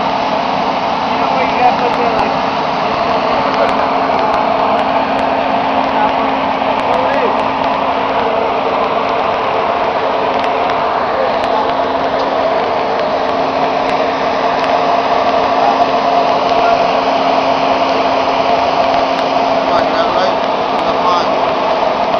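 A running engine gives a steady mechanical drone with an even hum, unchanged throughout, under faint, unclear voices.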